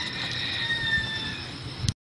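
Outdoor background noise with a faint, steady high-pitched tone. Near the end a click, and the sound cuts off abruptly at an edit.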